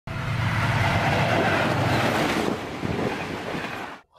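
Diesel locomotive hauling a train along the rails: a steady rumble with running noise from the wheels and track. It eases off a little about two and a half seconds in and cuts off suddenly at the end.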